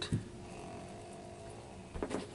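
A mostly quiet room with faint background tone, a soft knock just at the start, and a brief tap near the end as small hard objects are set down on a carpeted rug.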